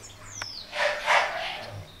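An English bulldog puppy's breathy snuffling for about a second as her face is held, in two swells. It is preceded near the start by a brief high chirp that falls in pitch.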